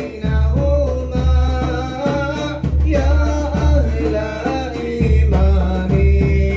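Sung qasida, an Arabic devotional poem, with a wavering melodic voice line over a heavy low beat that pulses about once a second.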